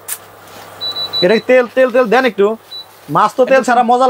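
A man talking, over a faint steady low hum, with a short high-pitched beep about a second in.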